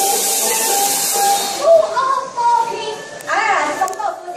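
A loud, steady hiss for about a second and a half, then people's voices, including a high call rising and falling near the end.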